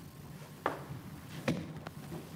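Footsteps on a hard stage floor: two sharp knocks less than a second apart, then a fainter one, as a person walks away from a lectern.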